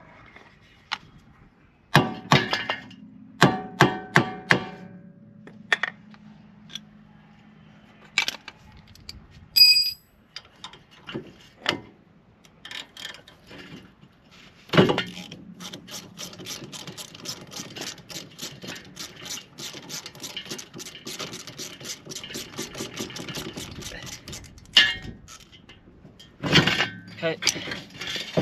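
A hammer strikes a tool on the seized ABS sensor bolt of a Ford Fiesta's rear hub about five times in the first few seconds, each blow ringing metallically. A single bright metallic ring follows near the ten-second mark. Later comes a long run of rapid clicking as a ratchet spanner works the bolt.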